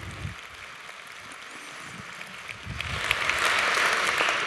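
Audience applauding in a lecture hall: sparse clapping that swells into full applause about three seconds in.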